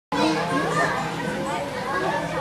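Overlapping voices of children and adults chattering and calling out.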